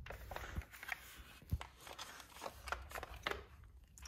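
Handling noise: faint, irregular clicks and rustling as the phone and the toy are moved about in the hand.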